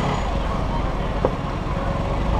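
A vehicle engine idling in stopped street traffic, a steady low rumble. There is one short sharp click about a second in.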